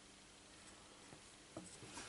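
Near silence: faint room tone with a couple of faint short ticks in the second half.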